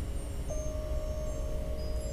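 Soft ambient meditation background music of long held chime-like tones over a low hum, with a new note coming in about half a second in and holding steady.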